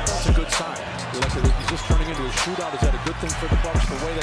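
Basketball bouncing on a hardwood court in repeated sharp thuds at an uneven pace, over music and indistinct voices.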